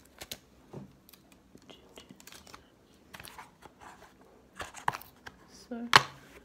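A DVD case and its cover being handled: soft plastic rustling and scattered light clicks, with a few louder handling noises a little before five seconds in and a sharp click near the end.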